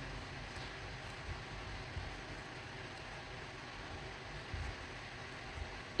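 Steady low background hiss and hum of room noise, with a few faint soft bumps and no distinct event.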